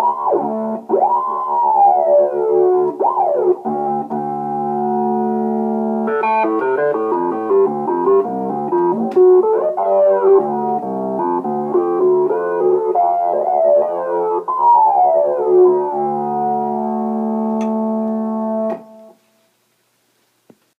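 Moog Multimoog analogue synthesizer holding a low note while a bright, whistling overtone sweeps up and down through it again and again, worked by a voltage control pedal. In the middle comes a quick run of fast-changing notes. The sound cuts off suddenly about a second before the end.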